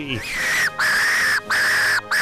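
Fox call sounding three long, high, even notes in a row, each rising quickly at its start and dropping off at its end, with short gaps between.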